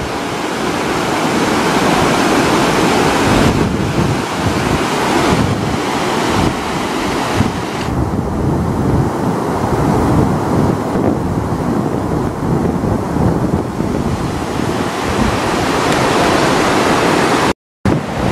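Fast, turbulent muddy floodwater rushing down a desert wadi in spate: a steady, loud rushing noise. It drops out abruptly for a moment near the end.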